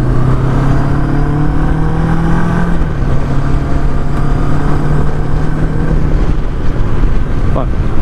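Macbor Montana XR5 motorcycle engine running at a steady road cruise with wind and road noise, its note easing off about six seconds in.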